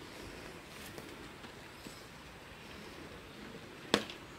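Faint rustling and small ticks of twine and banana leaves being handled as twine is tied around a leaf-wrapped parcel, with one sharp click near the end.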